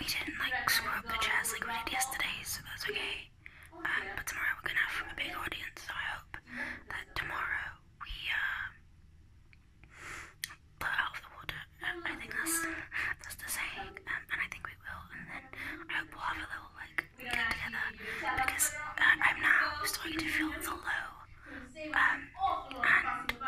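A woman whispering close to the microphone, in several stretches with a short pause about halfway through.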